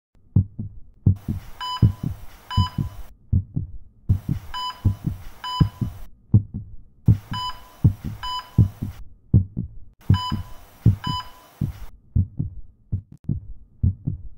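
Sound effect of a heartbeat thudding in lub-dub pairs, with a heart monitor beeping twice in each of four bursts of hiss that come about three seconds apart.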